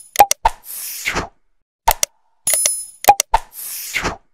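Subscribe-button animation sound effects: sharp mouse clicks and a short bell ring, then a whoosh. The sequence plays twice.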